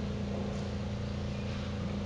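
Steady low hum with a constant drone just under 200 Hz over a dull rumble, unchanging throughout.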